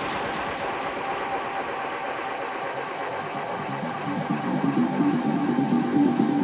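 Electronic dance music from a live DJ set in a breakdown: the kick drum has dropped out, leaving a noisy synth wash and a held tone. A pulsing synth line builds back in from about four seconds.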